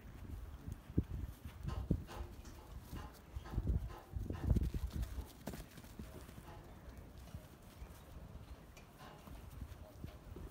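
Charollais sheep moving about a grass-and-dirt pen, their hooves giving irregular thuds and knocks, busiest in the first half and quieter after.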